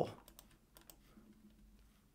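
A few faint, sparse clicks from a computer mouse and keyboard being worked at a desk, over a faint low hum of room tone.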